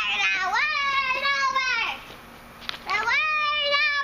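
A girl singing in a high voice, long drawn-out notes that glide up at the start and fall away at the end. She breaks off for under a second about two seconds in, then starts again.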